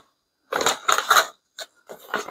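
Plastic packaging crinkling and crackling as it is handled, starting about half a second in after a moment of silence, with a single click near the end.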